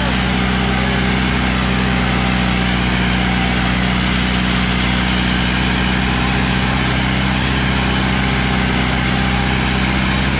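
Powertrac Euro 60 tractor's diesel engine running steadily under load while pulling a disc harrow through the soil, at an even, unchanging pitch.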